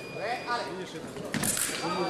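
Voices of people talking in a large, echoing sports hall, with a sharp noise about one and a half seconds in and a faint steady high tone at the start and again near the end.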